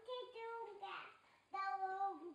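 A toddler singing without clear words: two short phrases of drawn-out notes, with a brief pause between them about a second and a half in.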